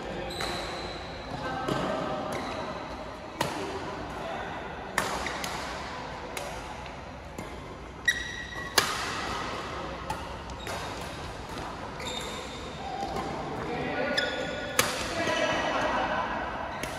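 Badminton rackets striking a shuttlecock during a doubles rally: sharp cracks about every second and a half, two of them loudest in quick succession a little past halfway. They echo in a large hall over distant chatter.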